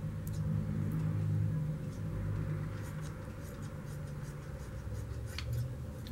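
Scissors snipping and rustling through layers of tulle, a few faint short snips mostly in the second half, over a steady low hum.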